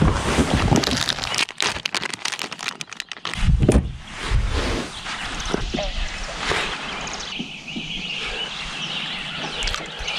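Clicks, knocks and rustling from fishing tackle and a rod being handled in a fishing kayak. There are many sharp clicks in the first few seconds and a couple of dull thumps a few seconds in, over a steady hiss.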